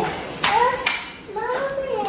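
A toddler's high-pitched voice: two short wordless vocal sounds, one about half a second in and a longer one near the end, each sliding up and down in pitch.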